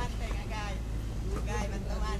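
People's voices calling out, two raised calls about half a second in and near the end, over a steady low rumble.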